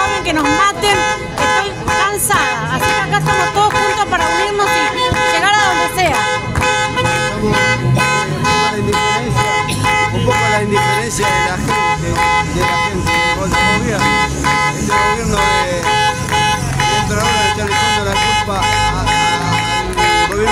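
Car horns honking in a protest bocinazo: several long blasts held and overlapping at different pitches, with people shouting over them.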